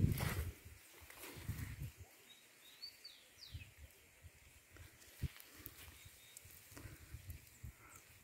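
Faint outdoor farm ambience: a bird gives a few short high chirps about three seconds in, with scattered soft footfalls through low leafy crop plants.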